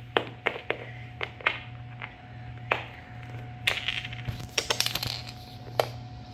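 Small plastic toys tapping and clicking on a wooden floor as they are handled: scattered single knocks, with a quick run of clicks about four to five seconds in. A faint steady hum underneath.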